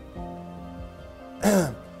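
Soft background music with held tones, and a man clearing his throat once, loudly, about one and a half seconds in.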